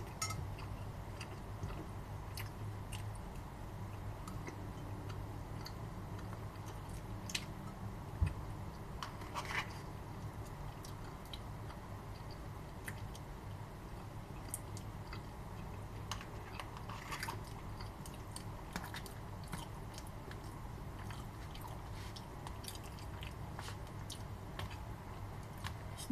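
A person eating: chewing with scattered small crunches and mouth clicks over a steady low room hum, and one sharper knock about eight seconds in.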